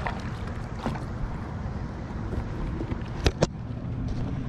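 Low, steady wind rumble on the camera microphone out on open water, with two sharp knocks in quick succession a little over three seconds in.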